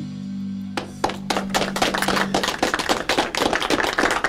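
A live band's final chord ringing out on electric bass and guitars, fading away over about two seconds. From about a second in, a few people clap in a small room.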